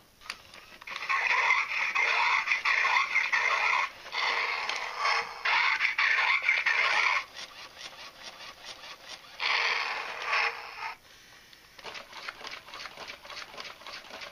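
Robotic dinosaur toy giving electronic growls and screeches through its small speaker in three loud bursts. Faint rapid clicking of its motor and gears follows near the end.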